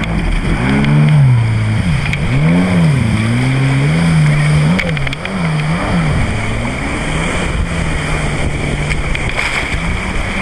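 Stand-up jet ski engine revving up and down several times as it gets under way, then holding a steadier speed from about seven seconds in, over the hiss of water.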